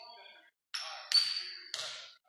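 Basketball bounced on a hardwood gym floor three times, about half a second apart, each bounce sharp with a short echo from the hall.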